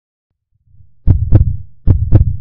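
Heartbeat sound effect: a low rumble fades in, then a double thump (lub-dub) about a second in and the next double thump starting near the end.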